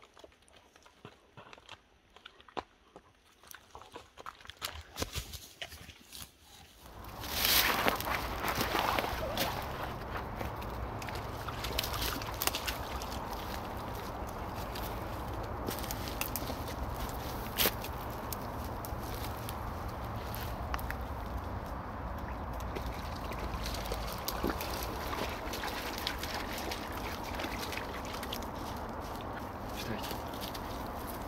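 Faint scattered clicks and scrapes, then about seven seconds in a steady rushing outdoor noise with a deep rumble sets in, broken by a few sharp snaps.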